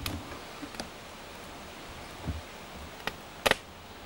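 A few light clicks and knocks of things being handled over a steady background hiss, the sharpest a quick double click about three and a half seconds in.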